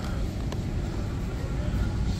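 Steady low background rumble of a supermarket aisle, with a faint click about half a second in.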